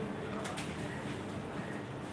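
Faint pigeon cooing over a steady low background hum.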